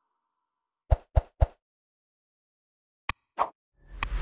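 Short, sharp pops against dead silence: three in quick succession about a second in, then two more brief clicks near the end.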